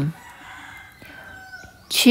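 A faint bird call in the background: one drawn-out call about a second long, in the short gap between a woman's words.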